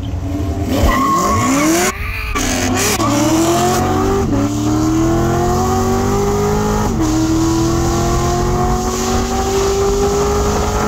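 Full-bolt-on C7 Corvette and Gen 6 Camaro launching side by side from a dig and accelerating hard. Engine pitch climbs and falls back at each upshift, at about two, three, four and seven seconds in.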